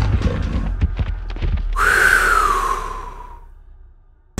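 Animal sound effects: a quick run of clattering footfalls, then about two seconds in a loud cry that rises briefly and slides down in pitch, fading away over the next second and a half.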